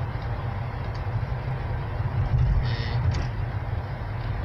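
Road noise inside a moving car's cabin: a steady low rumble from the engine and tyres, with a brief louder hiss about two-thirds of the way through.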